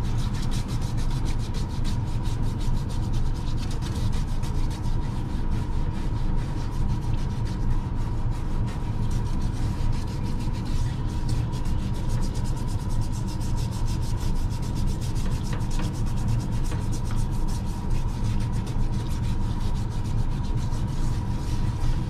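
Soft toothbrush scrubbing leftover ink out of the etched grooves of an intaglio printing plate: fast, steady rubbing strokes. Underneath runs the steady hum of a parts washer.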